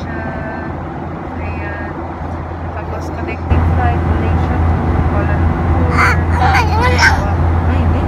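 Steady low drone of an airliner's cabin, stepping up louder about three and a half seconds in, with a voice heard briefly past the middle.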